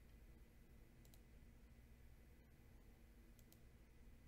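Near silence: faint low room hum, with two pairs of faint short high clicks, one about a second in and one near the end.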